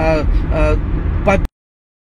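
A man's voice over the steady low rumble of a car cabin; about one and a half seconds in, all sound cuts off abruptly to dead silence, a dropout in the recording.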